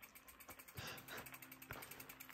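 Freehub pawls of a mountain bike's rear hub ticking rapidly and evenly as the bike is pushed uphill, the wheel rolling while the pedals stay still. There are a couple of soft knocks along the way.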